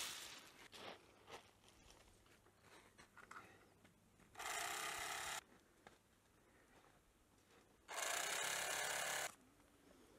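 Handheld bag-closing sewing machine stitching shut a sack of almonds, run in two steady bursts of about a second each, the first a little over four seconds in and the second near the end. At the start, almonds give a brief rattle as they are sifted by hand.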